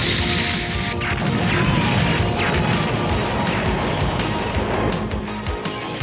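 Cartoon action music score with crashing sound effects: a noisy crash in the first second, over a low rumble that runs on beneath the music.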